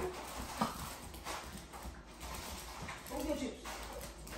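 A small dog's claws clicking lightly and irregularly on a hardwood floor.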